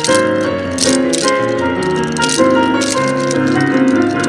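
Up-tempo yosakoi dance music with a keyboard melody and held chords, cut through by short bursts of clacking from hand-held naruko wooden clappers, several times a second or two apart.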